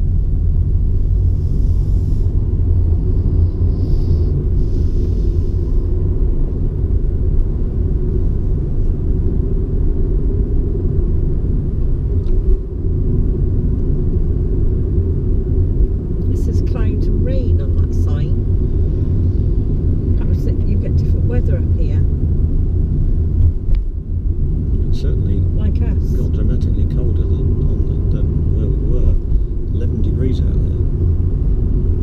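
Steady low rumble of a car's engine and tyres on the road, heard from inside the moving car's cabin. Voices join in about halfway through.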